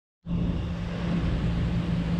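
A steady low rumble with a constant low hum, starting a moment in.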